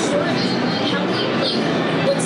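A woman talking over the loud, steady din of a crowded exhibition hall.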